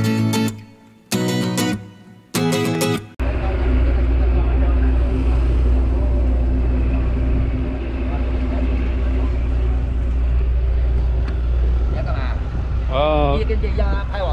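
Acoustic guitar strums a few chords, one about every second and a quarter. About three seconds in, this cuts to a loud, steady low engine rumble, like a moored boat's diesel idling. A voice speaks briefly near the end.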